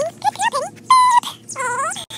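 Pet pig giving a run of short, high squealing whines, some sliding up or down in pitch; the loudest is a held note about a second in.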